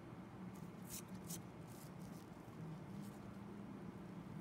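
Faint steady low hum with a handful of soft, short clicks spread through the first three seconds, the small handling sounds of close-up skin extraction work.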